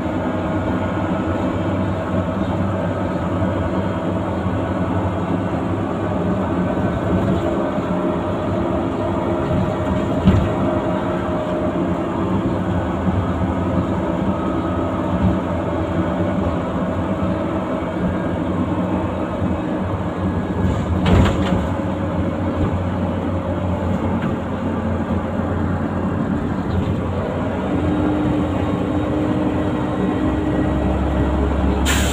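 Leyland Olympian double-decker bus on the move, heard from inside: its diesel engine and drivetrain running steadily under way. There are two knocks, about ten and twenty-one seconds in, and a new steady note joins the engine sound near the end.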